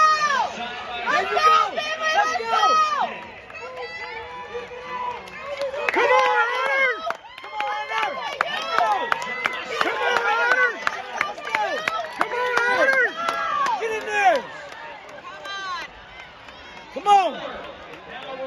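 Spectators in a stadium yelling and cheering for runners in a race, with high-pitched, drawn-out shouts one after another over crowd noise. One loud shout comes near the end.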